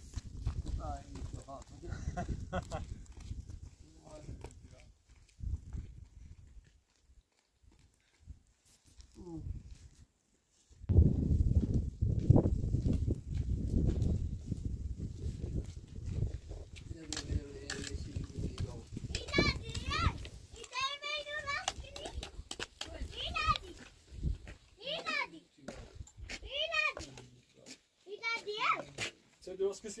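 People talking, in speech the recogniser did not transcribe, with a loud low rumble for several seconds in the middle.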